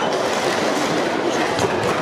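Busy hubbub of many voices in a sports hall, with a few light clicks of plastic sport-stacking cups being handled near the end.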